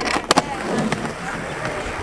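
Skateboard wheels rolling on a smooth concrete skatepark deck, a steady rumble, with a few sharp clacks in the first half second.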